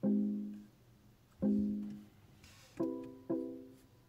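BMW i3 dashboard chime sounding four times: soft, plucked-sounding tones that each die away quickly, the last two higher-pitched and close together near the end. They come as the instrument display shows warning messages ('Accessories still active', 'Disconnect charging cable').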